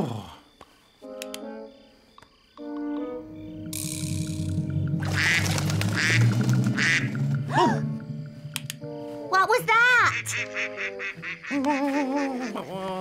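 A duck quacking a few times over soft background music, with a rush of noise in the middle and a sigh at the start.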